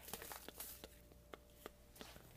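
Faint, scattered crinkles and clicks of plastic bubble wrap being handled.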